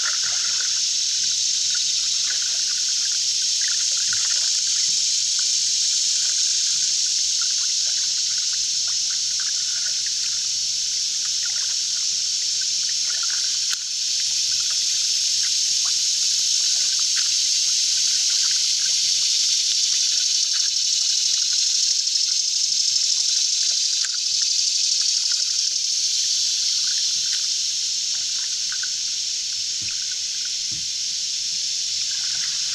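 Water trickling and dripping around a canoe being paddled, with many small irregular drips over a steady high hiss.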